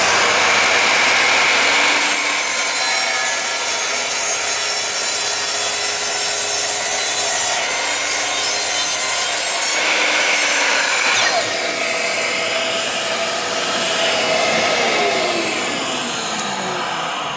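Evolution R255SMS sliding mitre saw running, its blade cutting through a wooden batten, with a vacuum running for dust extraction. Cutting noise is strongest from about 2 s to 10 s, then eases off. Near the end the motor winds down with a falling whine.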